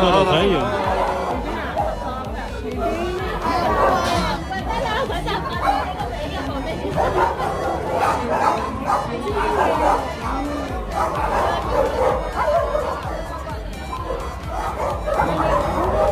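Shelter dogs barking among people's chatter, over background music.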